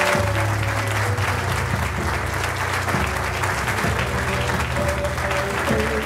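A crowd applauding steadily, with music playing underneath.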